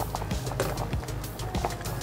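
Wire whisk stirring thick béchamel in a stainless steel saucepan, its wires clicking against the pan in a run of quick, uneven taps, over soft background music.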